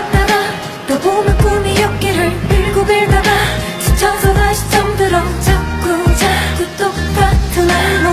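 A K-pop song plays with a steady drum beat, a stepping bass line and a singing voice.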